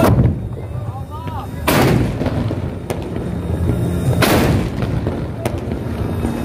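Carbide cannons (meriam karbit), big log barrels fired with carbide gas, going off in turn: three loud booms, at the very start, just under two seconds in and just over four seconds in, with two fainter, more distant bangs between them.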